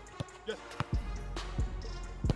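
A football being struck and touched on artificial turf, several short thuds with running footsteps, over background music.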